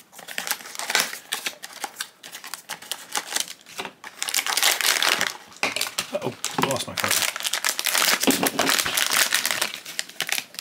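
A cardboard blind box is opened, then the silver foil bag inside is crinkled and torn open by hand, with plastic wrapping rustling. The crinkling is thickest and loudest in the second half.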